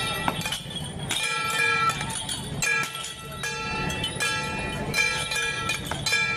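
Metal percussion of a Taiwanese temple troupe: gongs and cymbals struck in a steady beat, a stroke a little under every second, each ringing briefly.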